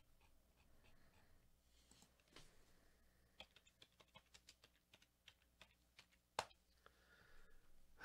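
Near silence, broken by faint, quick, irregular clicks of typing on a computer keyboard from about three and a half to six and a half seconds in. One click near the end of the run is louder than the rest.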